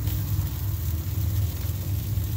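A steady low rumble with no speech, joined by a faint steady hum through roughly the first half.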